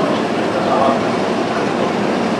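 Bolliger & Mabillard steel inverted roller coaster train running along its track overhead, a steady loud rolling noise of wheels on steel rail.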